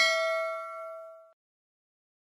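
Notification-bell ding sound effect: a single struck, bell-like tone with several overtones, fading out within about a second and a half.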